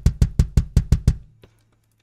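Sampled kick drum from a GetGood Drums virtual kit played in Kontakt, hit in a fast even run of about eight strokes a second that fades out about a second and a half in. The hits are a test that the kick is routed to its own tracks.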